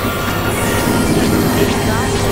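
Experimental electronic noise music: a dense, steady synthesizer drone with layered noise from low rumble to high hiss, loud throughout, with a faint rising glide near the end.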